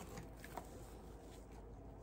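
Quiet room tone with faint handling noise, a couple of soft touches early on, as a small item is picked up.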